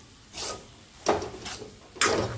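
Metal spatula scraping across a metal kadai while stirring a crumbly roasted besan-and-milk mixture, in two rasping strokes a little under a second apart. The mixture is being stirred until it soaks up the milk and turns granular.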